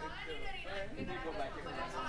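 Students chattering in a classroom: several voices talking over one another at once, no single voice standing out.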